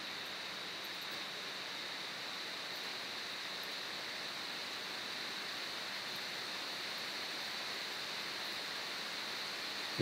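Steady background hiss with a slightly brighter high-pitched band and no distinct events: the recording's noise floor while nobody speaks.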